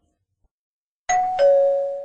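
A two-note chime, a higher note about a second in followed quickly by a lower one that rings on and fades: a doorbell-style ding-dong.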